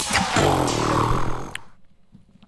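Closing whoosh of the intro music: a dense noisy swell with a low rumble under it that stops suddenly about a second and a half in.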